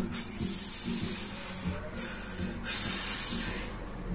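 A man breathing out hard through his mouth in two long hissing breaths while working through a set of barbell reps, the second starting a little after the middle.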